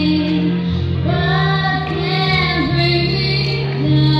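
A young female singer singing into a handheld microphone over musical accompaniment, holding long notes that slide between pitches.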